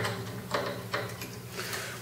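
A low guitar string note, plucked just before, ringing on through a slow fade, with a few light clicks over it.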